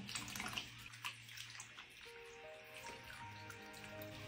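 Faint tap water running and splashing in a bathroom sink as a kitten is washed. About halfway through, background music of held notes comes in.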